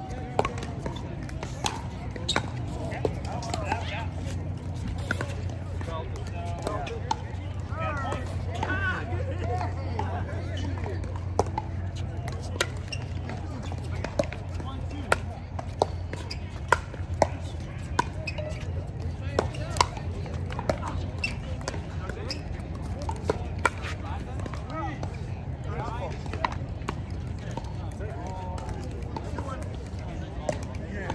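Pickleball rallies: paddles hit the plastic ball again and again in sharp, irregular pops. Voices can be heard in the background, and a steady low hum runs underneath.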